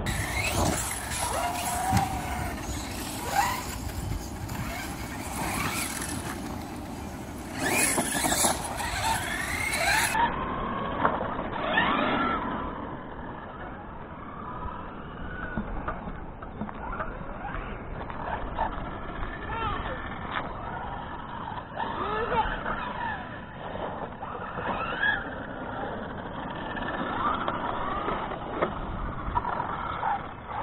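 Electric RC monster trucks with brushless motors driven on icy pavement, their motor whine gliding up and down with each burst of throttle and braking.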